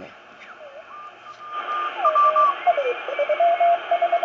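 Ten-Tec Century 21 CW transceiver's receiver audio through its speaker as the main dial is tuned: band hiss with whistling carrier tones that step and slide down in pitch. It settles on a Morse code signal, a steady tone keyed on and off rapidly, near the end.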